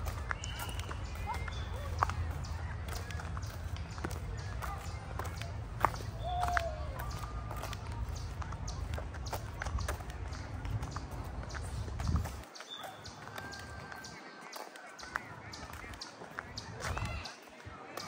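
Footsteps of someone running, a quick train of short taps, over a low rumble on the microphone that cuts off suddenly about twelve seconds in. Faint voices are heard in the distance.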